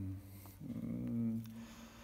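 A man's drawn-out hesitation hum, "mmm", made with closed lips while he searches for the next word, held steady for about a second before fading.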